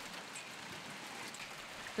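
Hail falling on an asphalt road: a faint, steady patter of many small impacts, heard as an even hiss.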